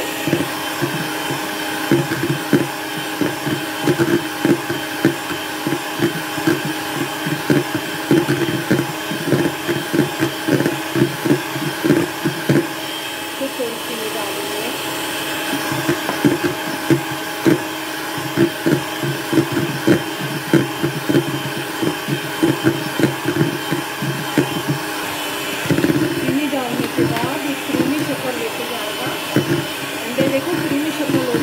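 Electric hand mixer running steadily, its wire beaters whisking a thin egg-and-oil batter in a plastic bowl, with frequent irregular knocks as the beaters strike the bowl.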